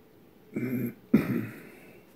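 A man clearing his throat with two short coughs, the second sharper and louder.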